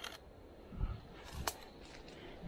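Sony mirrorless camera's shutter firing once with a sharp click about one and a half seconds in, against faint handling noise from the camera being held to the eye.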